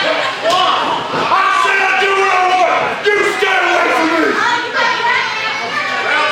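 Voices shouting in a large hall around a wrestling ring, with a few thuds of strikes and bodies hitting the ring.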